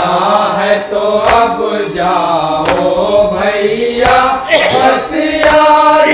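Men's voices chanting a Shia noha lament together, with a loud chest-beating slap of matam about every second and a half.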